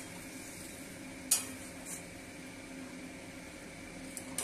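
Metal spatula stirring a thick curry as it simmers and sizzles in an aluminium kadai, with one sharp scrape against the pan about a second and a half in and a lighter one soon after. A steady low hum runs underneath.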